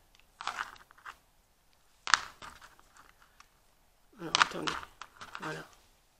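Wooden beads and thread handled while threading beads onto a needle: a sharp click about two seconds in, with scattered softer ticks and rustles around it. A woman's voice murmurs briefly near the end.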